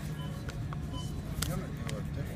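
Supermarket background: a steady low hum with faint music and distant voices, and a few short crinkles as a bag of fish-fry breading mix is taken off the shelf and handled.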